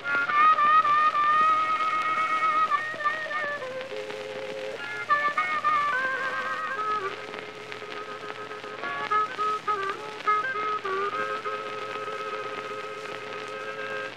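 Blues harmonica playing an instrumental break of long held notes, some briefly bent down in pitch, over the steady hiss and crackle of an old 78 rpm record.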